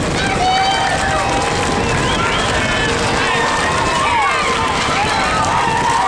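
Several people shouting and calling, with short rising and falling cries, over a constant loud rumbling noise as an ox-drawn racing cart and galloping horses pass.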